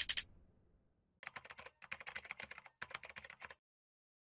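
Keyboard typing sound effect: three quick runs of rapid keystroke clicks, starting about a second in, as the lines of on-screen text type themselves out.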